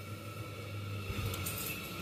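Gas combi boiler running: a steady low hum, with a soft low knock about a second in.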